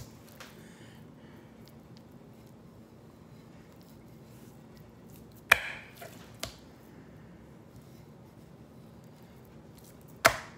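Quiet room tone, broken about halfway through by one sharp knock on a wooden end-grain cutting board, then two lighter knocks, as raw steaks are handled and set down on it.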